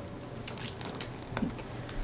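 A few light clicks and soft rustling from small objects being handled, over quiet room noise.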